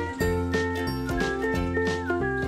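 Background music with a steady beat, bass and a melody of held notes.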